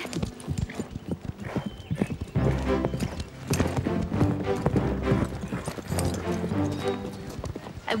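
A horse's hoofbeats on a sand arena as it is ridden toward a jump, a quick run of thuds. About two seconds in, background music with sustained low chords comes in over the hoofbeats.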